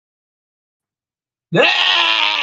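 Silence, then about one and a half seconds in a man lets out a loud, drawn-out yell that rises in pitch as it begins.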